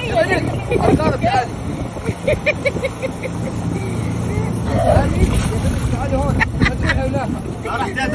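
Several excited voices and a run of short laughing pulses, over a steady low hum from a motorboat's engine and water splashing around swimmers.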